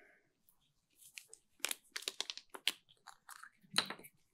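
Plastic water bottle handled near a podium microphone: a run of sharp crinkles and clicks, the loudest just before the end.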